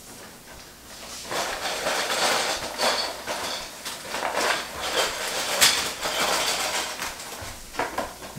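Small cardboard LEGO set box being opened and shaken out: its contents rustle and small hard plastic pieces click and clatter onto the bed in a run of bursts, starting about a second in.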